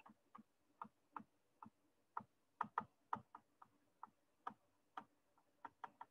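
Faint, irregular clicks, a few a second, of a stylus tapping down on a writing surface as words are handwritten.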